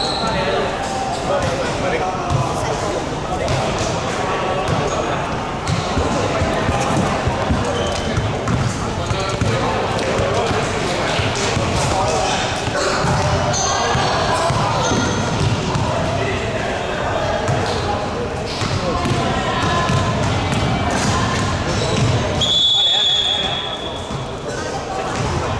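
Basketballs bouncing on a gym court amid many people's voices chattering, with a short high steady tone near the end.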